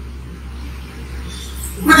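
A pause filled by a steady low hum under faint room noise, with a man's voice starting up near the end.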